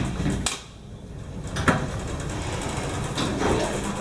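Otis hydraulic elevator's doors sliding shut after the door-close button is pressed, with a sharp knock about half a second in and another at about a second and a half, then a steady low rumble in the cab.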